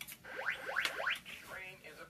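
A Polara Navigator pedestrian push-button speaker plays a quick run of about five rising electronic sweep tones. Then, a little over a second in, a recorded voice begins the railroad preemption warning that a train is approaching and the tracks must be cleared.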